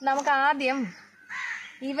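A woman speaking, with a single harsh crow caw between her phrases about a second and a half in.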